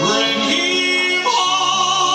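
Singing with musical accompaniment: a voice glides through a few notes, then settles on a held note a little over a second in, over steady sustained backing tones.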